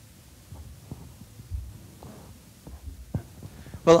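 Soft, irregular low thumps and a few light knocks over a faint steady hum, typical of a handheld microphone being picked up and handled.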